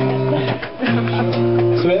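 Acoustic guitar being strummed while tuning up, each chord left to ring. One chord rings out, then a fresh strum about a second in rings on until a voice comes in near the end.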